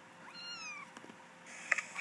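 A single faint, high-pitched kitten meow that rises and then falls, played from a YouTube video through a laptop's speakers.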